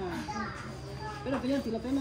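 People talking, high-pitched voices with children among them; the talk grows louder in the second half.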